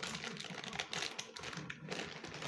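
Plastic packaging bag crinkling as it is gripped and handled: a dense run of small crackles and clicks.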